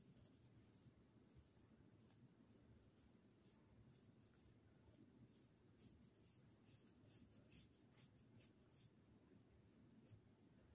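Near silence with faint swishes of a paintbrush stroking wet watercolor across paper, a run of brief scratchy strokes, more of them in the second half, over a low room hum.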